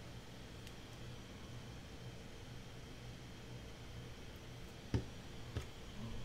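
Quiet room tone with a steady low hum, and two soft knocks near the end as a small notebook and a pressing tool are handled against a cutting mat.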